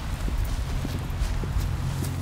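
Footsteps of several people walking on a concrete path, a few uneven steps a second, over a steady low rumble.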